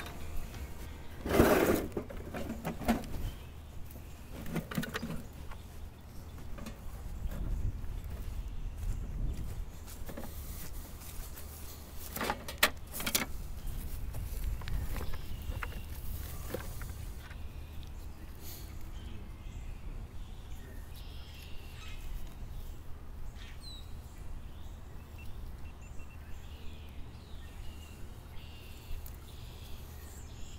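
Hands working at a dirt-hole fox set, resetting a steel coil-spring trap that a fox had flipped. A loud knock comes about a second and a half in and two sharp clicks near the middle, with small scrapes and ticks of digging and trap handling over a steady low hum. A few faint bird chirps come later.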